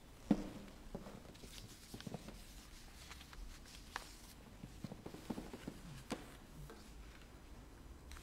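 Faint handling noises: one sharp thump shortly after the start, then scattered light clicks, knocks and soft rustles as items and papers on an altar table are moved about.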